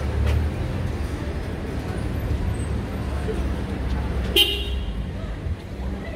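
Outdoor street ambience with a steady low rumble, and one brief, high, pitched sound with several tones about four and a half seconds in.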